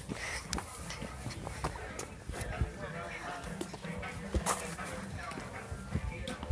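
Scattered light knocks and rubbing from a phone being handled and carried while walking, with faint voices in the background; one sharper knock about four and a half seconds in.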